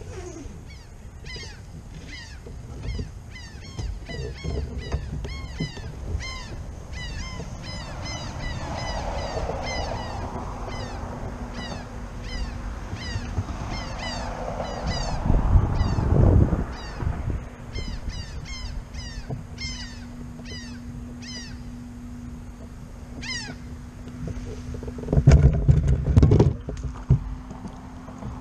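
Birds calling over water: a steady run of short, high, downward-slurred calls, a couple a second, over a low rumble. A few louder low thumps come around the middle and again near the end.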